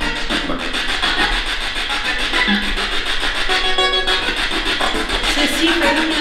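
Spirit box sweeping through radio stations: continuous choppy static broken by brief snatches of broadcast voices and music.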